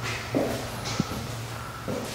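Boot footsteps scuffing and grinding on a dusty bare concrete floor, with a small sharp click about a second in.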